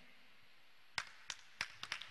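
A sharp click about a second in, followed by three or four fainter clicks, over otherwise near silence.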